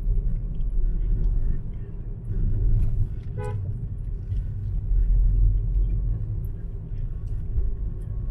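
Steady low road and engine rumble of a car driving along a town street. A short horn beep sounds once, about three and a half seconds in.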